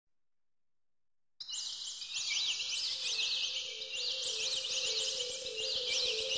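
Opening of an electronic instrumental: after about a second and a half of silence, a dense chorus of high, quick bird-like chirps sets in over a soft low tone that alternates between two close pitches.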